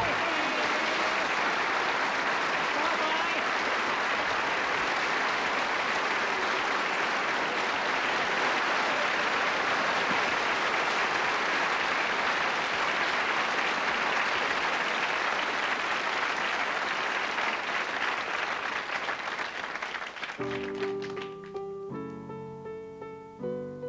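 Studio audience applauding steadily after a song, thinning out near the end as a piano starts playing the introduction of the next song.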